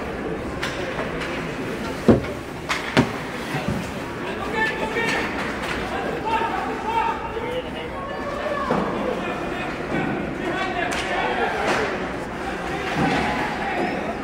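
Indistinct voices in an ice hockey arena, with two sharp knocks about two and three seconds in and a few lighter knocks later.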